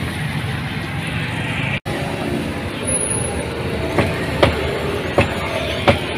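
Outdoor street ambience: a steady low rumble of traffic with faint voices. The sound drops out for an instant just under two seconds in, and a few sharp clicks come from about four seconds on.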